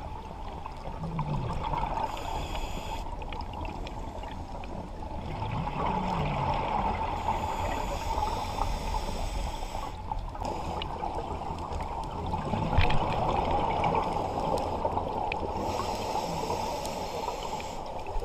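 Scuba diver breathing through a regulator underwater: hissing inhalations alternating with bubbling exhalations, repeating every several seconds.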